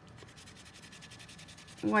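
Paper towel rubbed quickly back and forth over cardstock, a faint, even scrubbing of about a dozen strokes a second, wiping excess ink off the embossed sentiment.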